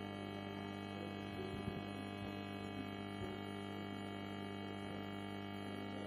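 Faint, steady electrical hum with a buzzy stack of overtones, unchanging throughout; no other clear sound.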